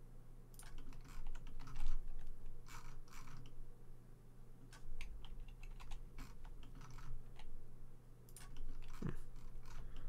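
Computer keyboard keystrokes in irregular, scattered clicks as shortcut keys are pressed, over a steady low hum.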